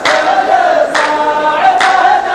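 A row of men chanting a sung verse together in unison, with a sharp group handclap about once a second, at the start, about a second in and near the end.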